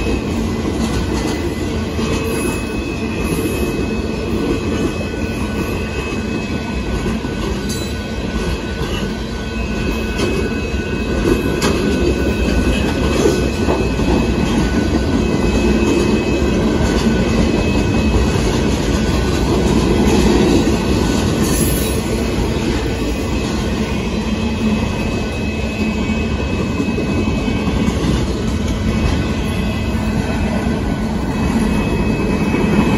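Freight train cars rolling past on the rails: a steady rumble and clatter of steel wheels, with a thin high squeal on and off. It swells a little in the middle.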